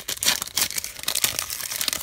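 Foil wrapper of a Pokémon trading card booster pack being torn open and crinkling as the cards are pulled out, a dense run of crackles.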